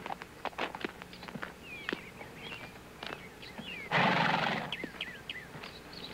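Saddled horse standing in a stable yard, with scattered light knocks of hooves shifting on packed dirt and one short, loud horse sound about four seconds in.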